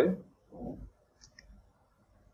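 A few faint, quick clicks about a second and a quarter in, after the end of a spoken word and a short low mumble.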